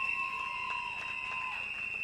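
Light, scattered clapping and crowd noise, with a steady high-pitched whine underneath.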